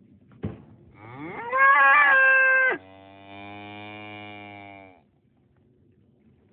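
A cow mooing once, one long call: it rises in pitch and holds loud for about a second and a half, then drops abruptly to a lower, quieter tone that is held for about two more seconds before it stops.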